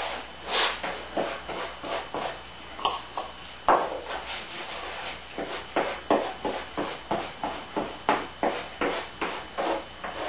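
A small brush stroking epoxy onto wet fiberglass tape over a wooden hull seam, each stroke a short scratchy swish. The strokes are irregular at first, then settle into an even run of about two to three a second from the middle on.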